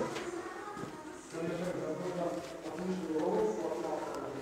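A person's voice, faint and in the background, in short held stretches.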